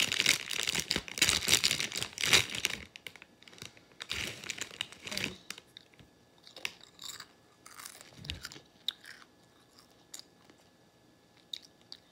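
A crinkly foil chip bag rustling loudly as a hand digs into it for the first few seconds, with a second burst of rustling a little later, then the crunching and chewing of chips, in scattered quieter crunches.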